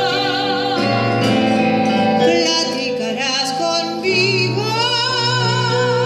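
A woman singing a bolero with long held notes and vibrato, accompanied by piano chords on an electronic keyboard. A new vocal phrase begins about four seconds in.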